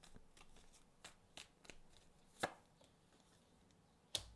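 Tarot cards being handled and laid down on a table: a scatter of faint light ticks, with one sharper tap about halfway through.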